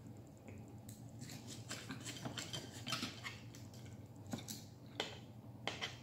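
Metal knife and fork cutting chicken on a plate: a run of faint small clicks and scrapes, with a few sharper clinks near the end.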